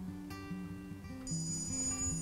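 Soft acoustic guitar music, with a high electronic beep from a Skytech fireplace remote receiver box, about a second long and starting a little past halfway, as its learn button is pressed: the receiver entering learn mode to pair with the remote.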